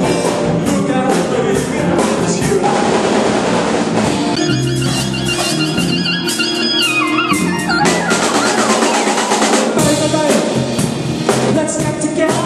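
Live swing band with horns playing, the drum kit keeping a steady beat. In the middle a fast run of notes on the keyboard falls in pitch.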